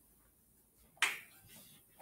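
A single sharp snap about a second in, fading within a fraction of a second.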